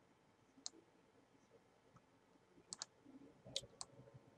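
Faint computer mouse clicks in a near-silent room: a single click just over half a second in, then two quick pairs near the end.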